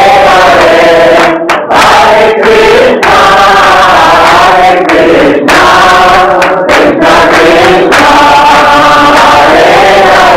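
A crowd of voices chanting a devotional chant together, loud and in short repeated phrases with brief breaks between them.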